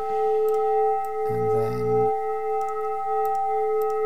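Granular synthesis output from a Max 7 granulator patch: a steady drone of several held tones, stretched or frozen from a sound file. A short low hum sounds for about a second near the middle.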